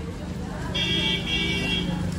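A vehicle horn sounds once as a steady note for about a second, starting under a second in, over the hum of street traffic.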